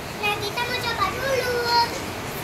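Young children's high-pitched voices talking.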